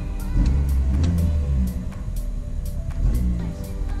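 A Mini's engine running roughly at about 1000 rpm while misfiring. The misfire is on cylinder four and is put down to a faulty fuel injector. The engine swells louder twice.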